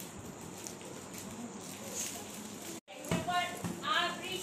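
Indistinct room noise with faint voices. The sound drops out suddenly just under three seconds in, then a voice starts speaking clearly near the end.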